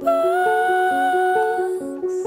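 Song: a voice holds one long wordless note, rising slightly just after the start and ending near the end, over a repeating fingerpicked acoustic guitar pattern.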